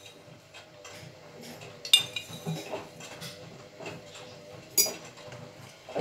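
Clinks and knocks of a glass instant-coffee jar, a spoon and mugs being handled while making instant coffee, with two sharper clinks about two seconds and five seconds in.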